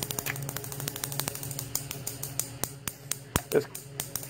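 Homemade Ruhmkorff induction coil firing unevenly: its vibrator interrupter chatters and sparks snap in quick, irregular clicks over a steady low hum. The uneven firing is the sign of a coil short of current, which needs just a little more to run stably.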